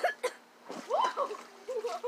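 Pool water splashing in short bursts, with voices in the background.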